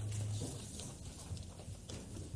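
Footsteps and shuffling of a group of children walking off the platform: scattered soft knocks and patter. A low steady hum stops about half a second in.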